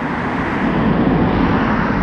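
Road traffic: cars passing close by, a steady rush of tyre and engine noise that swells about half a second in and stays loud.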